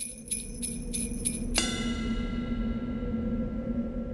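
Small metal bells jingling in about five quick shakes, roughly three a second, then a single bell strike about a second and a half in that rings on and slowly fades. A steady low hum runs underneath.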